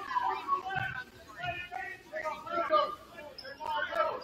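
Indistinct voices in a basketball gym, players and spectators talking and calling out with no words made out.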